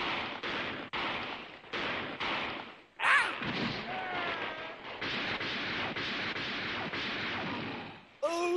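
Musket gunfire in a battle sound effect: separate shots about half a second apart, then a man's shout about three seconds in, followed by a continuous rattle of gunfire.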